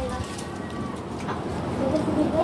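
A bird cooing over outdoor background noise.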